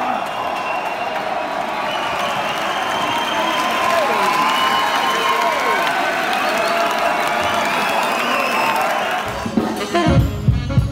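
Concert audience in a large hall cheering and applauding, a dense steady roar of clapping and shouting voices. The band starts playing near the end.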